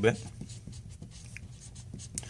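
Marker pen writing on paper, a quiet run of short strokes across the sheet.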